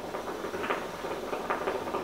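Khalil Mamoun hookah bubbling as a draw is pulled through the hose: the water in the base gurgles in a quick, irregular rattle, with a couple of louder surges.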